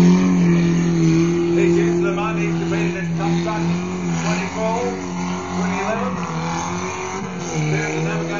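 Off-road 4x4's engine revving hard and held at high revs as it works through a mud section; the revs fall back about four seconds in and climb again near the end.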